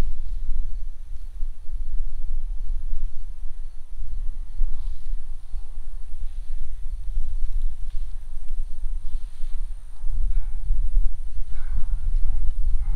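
Low, uneven rumble of wind buffeting the camera microphone outdoors, with a few faint rustles in the grass.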